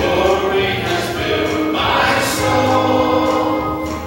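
A church congregation singing a worship song, led by a man singing into a handheld microphone, with long held notes.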